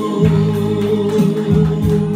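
A man singing a Vietnamese hymn, holding one long note over steady musical accompaniment.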